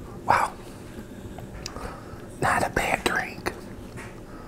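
A man sipping a drink from a glass with ice, up close to the microphone: a short slurp just after the start, then a louder run of slurping and mouth sounds from about two and a half to three and a half seconds in.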